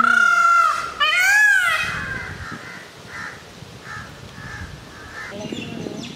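Indian peafowl calling: two loud calls in quick succession, the second rising and then falling in pitch, followed by a run of fainter short notes.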